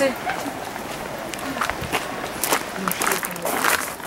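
Faint background voices of people talking, with a few short noisy crackles in the second half.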